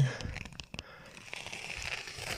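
Faint rustling handling noise of a phone being moved about inside a narrow rock crevice, with a few light clicks.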